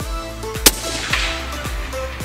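Intro music with a steady beat, cut by one sharp rifle shot about two-thirds of a second in, the loudest sound here.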